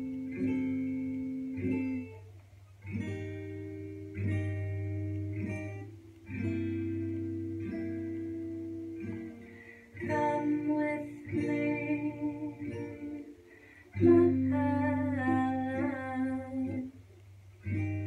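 Takamine acoustic guitar, capoed, played in slow picked chords that ring out one after another. A woman's voice joins in softly singing about ten seconds in.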